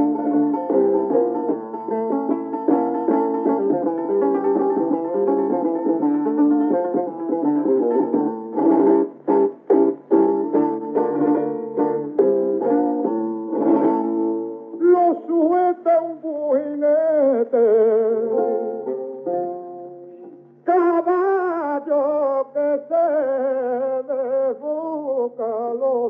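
A 1952 flamenco record of Spanish guitar and a male cantaor. For the first fourteen seconds the guitar plays alone, picking and then strumming sharp rasgueado strokes. About fifteen seconds in, the singer enters with a wavering, ornamented line, breaks off briefly and then carries on over the guitar; the sound is thin and dull, with nothing in the highs.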